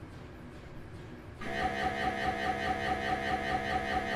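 Faint room tone, then about a second and a half in an MRI scanner starts a scan sequence: a steady buzzing drone at several fixed pitches, pulsing rapidly about five times a second.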